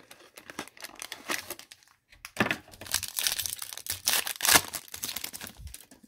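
Foil trading-card pack crinkling as it is worked out of its clear plastic tube, then torn open. The crackling is sparse at first, stops briefly about two seconds in, then comes back denser and louder.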